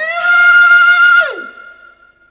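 Music: one flute-like wind-instrument note that slides up, holds steady for about a second, then slides down, leaving a single high tone fading out.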